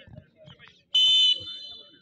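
Referee's whistle blown once about a second in: a short, loud, steady high blast that trails off more softly, the signal for a penalty kick to be taken.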